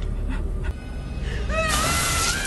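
Horror-film soundtrack: a low, steady rumbling drone with a few faint clicks. About a second and a half in, a loud burst of noise and a woman's wavering scream cut in.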